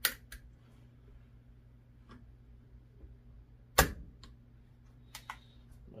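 AR-15 trigger group worked by hand in a bench jig: a few light metallic clicks, and one sharp snap about four seconds in, the loudest sound, as the hammer is reset and released during trigger-pull testing.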